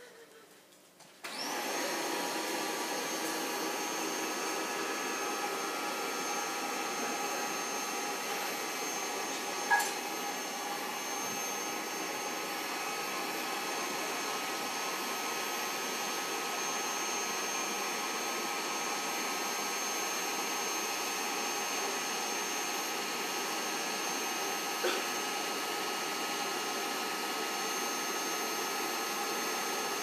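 EZ Bed's built-in electric air pump starting up about a second in and running steadily as it inflates the air mattress. There is one brief knock about ten seconds in.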